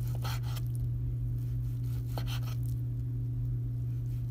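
Kitchen knife slicing through cooked pork belly onto a wooden cutting board: two short cutting strokes, one near the start and one about two seconds in. A steady low hum runs underneath.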